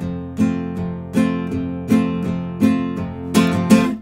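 Nylon-string classical guitar strummed in a steady, bouncy rhythm, about three strokes a second, as the lead-in to a song; the two strokes near the end are the loudest.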